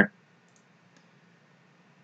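A few faint computer mouse clicks over near-silent room tone.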